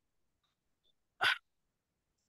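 Near silence, broken about a second in by one short, sharp burst of noise, like a single cough.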